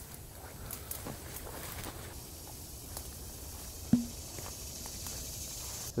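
Footsteps and rustling of leaves and brush as someone pushes through thick vegetation, with scattered soft clicks and a single sharper thump about four seconds in.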